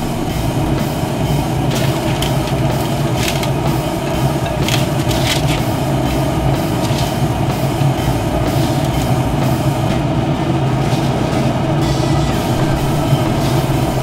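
A steady low mechanical hum, with a few short metallic scrapes and clinks in the first half as a metal spatula lifts cookies off a pellet grill's grate.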